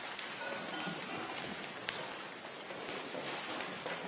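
A congregation getting to its feet: a steady rustling and shuffling of many people standing up from the pews, with one sharp knock about two seconds in.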